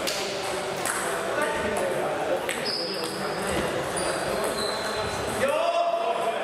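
A few sharp clicks of a table tennis ball, echoing in a large hall, over indistinct chatter.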